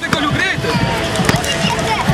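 A basketball being dribbled on the asphalt road, sharp bounces at an uneven pace, under the overlapping chatter and shouts of a crowd on the move.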